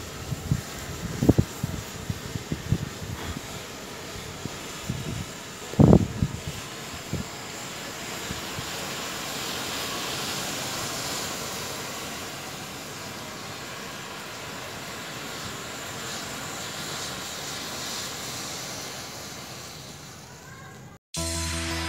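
A mass of packed matchsticks burning: a steady hiss of flame that swells to its strongest about halfway through and then slowly dies down. Several low thumps come in the first seven seconds, the loudest about six seconds in.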